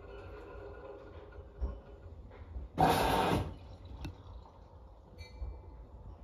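Front-loading washing machine with its drum at rest between turns: a low hum, with one short rush of noise about three seconds in.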